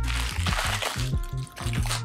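Paper packaging crinkling and tearing as it is opened by hand, a dense crackle through the first second or so, over background music with steady low held notes.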